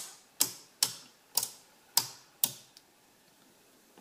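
Panel toggle switches flipped by hand: six sharp clicks about half a second apart, stopping about two and a half seconds in.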